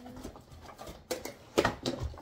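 Toy packaging being handled: a few sharp clicks and rustles, the loudest a quick cluster of clicks a little past the middle.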